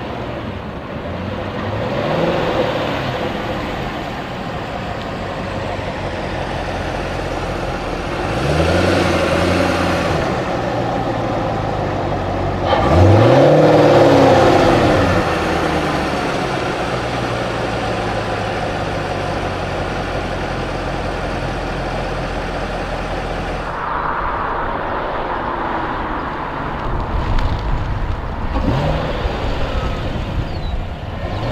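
A 2016 Chevrolet Corvette Stingray's 6.2-litre V8 running as the car drives. The engine rises and falls in pitch several times as it accelerates, loudest about thirteen seconds in.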